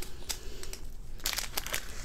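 Small plastic zip bags of diamond-painting drills crinkling as they are handled and set down, in several short rustles.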